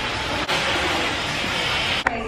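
Handheld hair dryer blowing steadily during a salon blowout, a loud even rush of air with a brief dip about half a second in.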